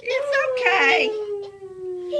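A person's long, drawn-out cry that slides slowly down in pitch and stops just after the two seconds, from someone just doused with ice water. Laughter from another voice overlaps it in the first second.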